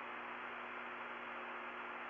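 Steady hiss of an open radio communications loop with a low, steady hum underneath, in a gap between transmissions.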